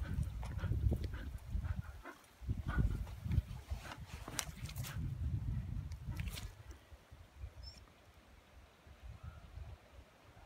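A dog breathing and panting close to the microphone, over irregular low rumbling and a few sharp clicks. It grows quieter about seven seconds in.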